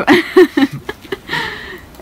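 A person's voice making short wordless sounds, then a breathy noise about a second and a half in.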